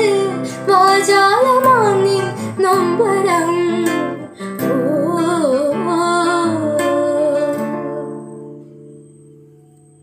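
A woman singing a Malayalam film song, accompanying herself with strummed chords on a classical guitar. Her last note ends about three-quarters of the way through, and the final guitar chord rings on and fades away.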